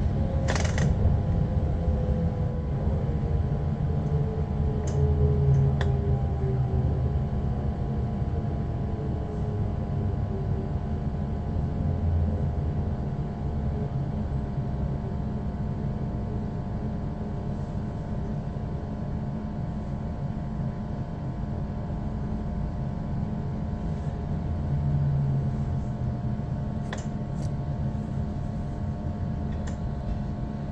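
A Class 345 electric train slowing into a station. Its low rumble eases off while a motor whine falls slowly in pitch over the first half.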